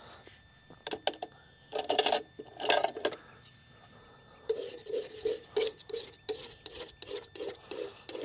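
Scraping and rubbing on an oil-painting palette: a few separate strokes, then from about halfway a run of short, even strokes about three a second.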